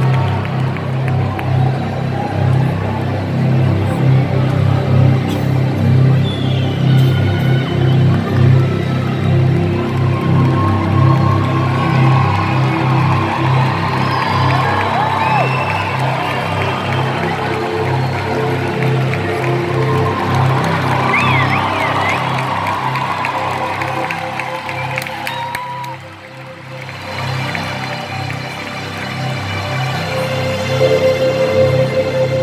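Live concert music over a large arena PA, heard from among the crowd, with a heavy pulsing bass. Fans cheer and whistle over it as the show begins. The sound dips briefly about 26 seconds in.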